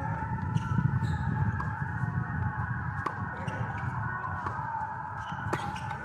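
A tennis rally: a ball is struck by rackets back and forth, with sharp hits a second or two apart, the loudest about three seconds in and near the end. Steady, slightly wavering high tones and a low rumble run beneath the hits.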